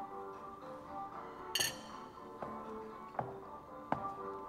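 Soft background music playing a slow, simple melody, with a single sharp clink of a spoon against a dish about a second and a half in and a few faint knocks later.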